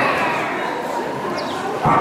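A dog yipping excitedly, high cries that slide down in pitch, with a louder burst near the end.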